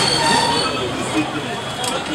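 Busy street noise: many voices talking over one another with traffic, and a high squeal in the first half-second.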